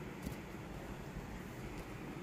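Faint, steady background noise with a low rumble and no distinct events.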